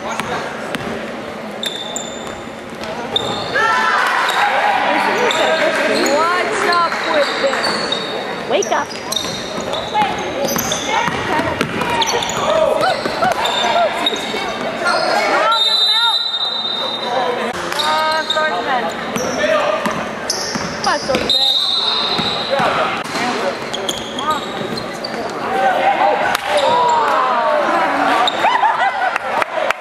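A basketball being dribbled on a hardwood gym floor during a game, the bounces echoing in a large hall, while players and spectators call out over it.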